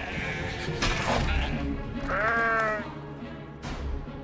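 A sheep bleats once, a wavering call lasting under a second about two seconds in, over dramatic film-trailer music with a low rumble. A sharp hit sounds near the end.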